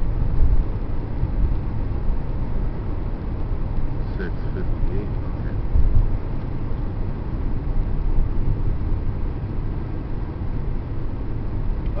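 Steady low rumble of road and engine noise inside the cabin of a moving 2002 Chevrolet Impala.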